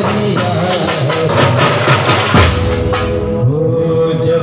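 Procession band music: drums beating a dense rhythm under a melody line. The drumming drops out about three seconds in, leaving the melody.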